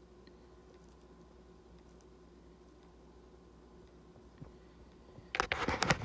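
Near silence with a faint steady hum for about five seconds, then a quick run of clicks and rustles near the end as the camera is handled and moved.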